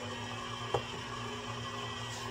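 Hamilton Beach stand mixer running steadily on speed two, its beater mixing the first cup of flour into the wet dough ingredients in a steel bowl. A single short click comes just under a second in.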